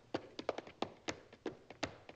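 Dancers tapping out a rhythm with the music stopped: a run of sharp, uneven clicks, about ten in two seconds.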